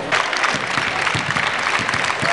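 A crowd applauding: a dense patter of many hands clapping at once, starting abruptly.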